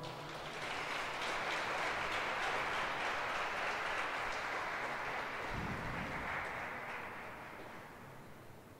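Audience applauding, building quickly to a steady level and fading away over the last couple of seconds.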